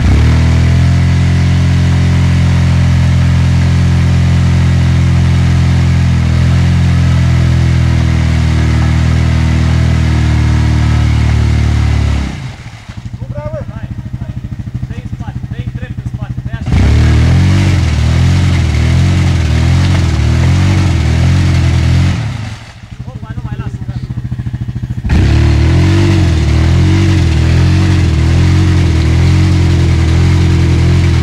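Quad bike (ATV) engine held at high revs while its wheels spin in deep mud, the machine bogged down. It runs hard in three long pushes, easing off for a few seconds at about 12 and again at about 22 seconds in, the pitch wavering as the wheels churn.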